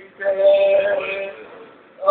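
A man singing one long held note of a devotional song (a naat), steady in pitch, fading away near the end.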